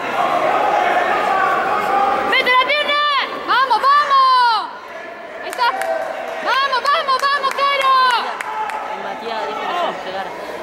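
High-pitched shouting from spectators, in bursts about two and a half, four, and seven to eight seconds in, over a steady crowd chatter.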